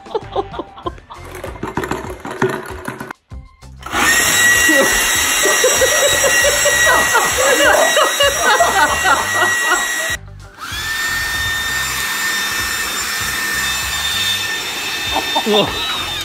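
Battery-powered cordless leaf blower running at full speed, a steady rush of air with a high motor whine. It cuts out briefly after about ten seconds, then spins back up with a rising whine and runs steadily again, with shouting over it.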